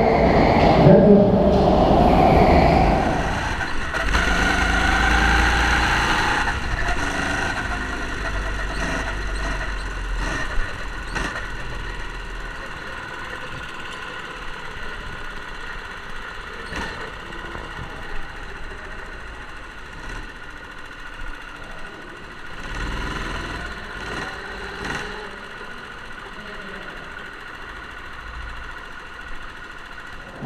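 Go-kart running on an indoor track, heard from on board: a steady motor hum with several held tones that slowly gets quieter.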